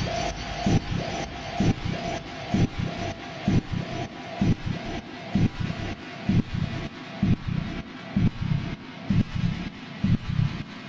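Dark electronic techno without a kick drum: low pulses a little over twice a second under a hissing, static-like haze. A held mid-pitched tone fades out over the first few seconds.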